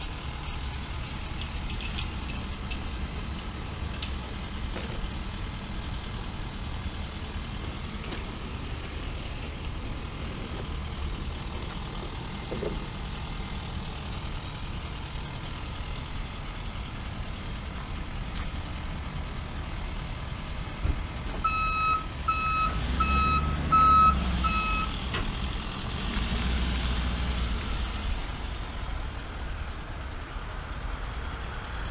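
Utility bucket truck's engine running steadily, then a backup alarm sounds five evenly spaced beeps a little over two-thirds of the way through. The engine grows louder as the truck moves off.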